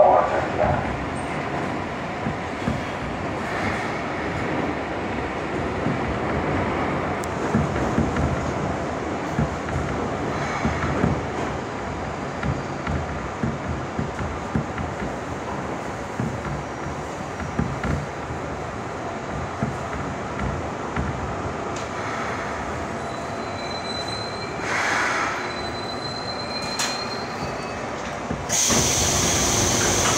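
Seoul Subway Line 2 train running into a station and braking to a stop, with steady wheel-on-rail rumble and a thin high squeal for a few seconds late on. Near the end a sudden loud hiss of air comes in as the train stops.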